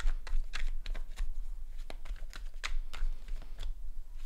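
Tarot cards being handled and shuffled by hand: a quick, irregular run of crisp card clicks and taps, about three or four a second.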